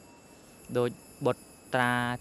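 A man's voice giving a sermon in Khmer. It starts after a short pause with two brief syllables, then holds one long drawn-out syllable near the end. A faint steady high-pitched whine sits underneath.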